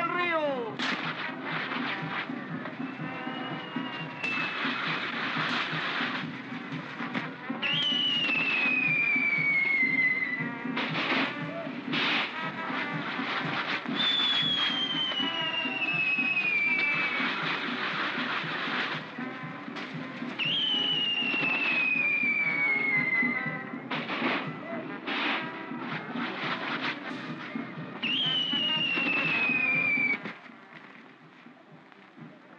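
Fireworks going off: repeated sharp bangs and dense crackling. Four long whistles each fall steadily in pitch over about three seconds.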